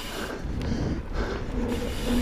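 2020 Ibis Ripley mountain bike rolling fast down a dirt trail: steady tyre rumble and rattle of the bike over the ground, with wind rushing on the camera microphone.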